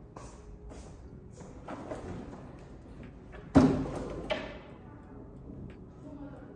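A single sudden loud bang about three and a half seconds in that dies away over half a second, followed by a smaller knock, against a background of faint room noise and a few soft rustles.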